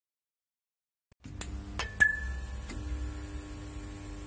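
Silence for about a second, then a channel-logo intro sting: a low steady hum with a held tone, a few sharp clicks and a short ringing ding about two seconds in.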